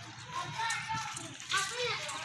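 Children's voices in the background: brief high-pitched calls and chatter.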